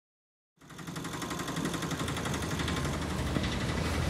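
Silence, then about half a second in, the small engine of a three-wheeler auto-rickshaw fades in and runs with a fast, even pulsing.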